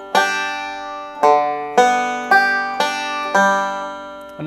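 Five-string banjo picked slowly in open first position, playing a backup pattern: a third-string note, a pinch, then an alternating roll. Each note rings on, about two picks a second.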